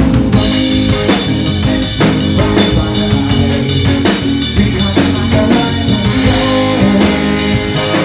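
Live rock band playing loud, with a drum kit keeping a steady beat under electric bass and guitar.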